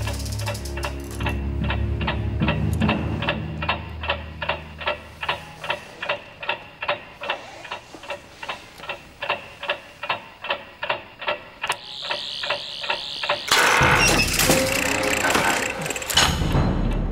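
Loud, evenly paced clockwork ticking, about two and a half ticks a second: the sound of a hidden clockwork android, over low sustained orchestral notes for the first few seconds. Near the end a sudden loud, noisy burst of sound cuts in and lasts about two seconds.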